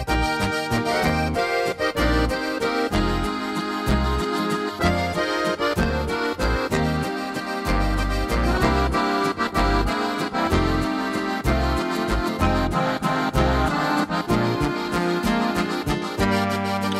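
Korg Pa5X Musikant arranger keyboard playing its Oberkrainer waltz style, opening with the intro in a major key: an accordion sound leads over a repeating bass and rhythm accompaniment.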